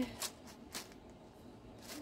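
Hands handling yarn and plastic bags: a few brief, faint rustles, about a quarter and three quarters of a second in.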